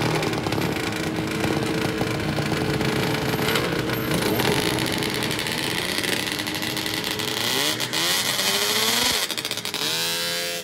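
Snowmobile engines running steadily, then one revs up with a rising pitch near the end.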